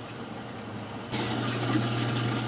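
A reef aquarium's under-cabinet plumbing: water running with the steady hum of a pump. It becomes clearly louder about a second in and then holds steady.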